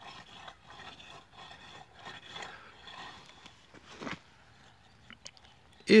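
Small garden rake scraping and raking through dry, crusted soil in short irregular strokes, breaking up the crust of the bed. The scraping stops about four seconds in, with a few faint clicks after.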